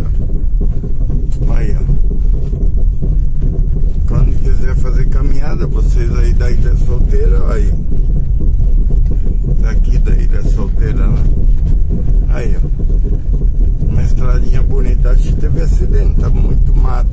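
Car driving on an unpaved dirt road, heard from inside the cabin: a steady low rumble of engine and tyres on the dirt surface.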